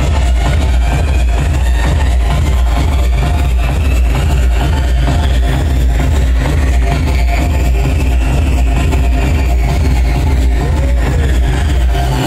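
Live electronic dance music played loud through a venue PA, with a heavy continuous deep bass under a dense beat and a slow high synth sweep that rises and falls.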